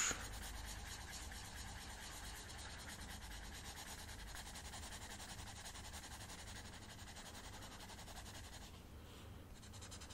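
A drawing tool scratching steadily across sketchbook paper close to the microphone, in continuous small strokes, easing off briefly about nine seconds in.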